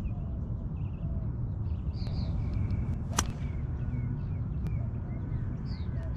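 A golf club striking a ball off the fairway: one sharp crack about three seconds in, over a steady low rumble.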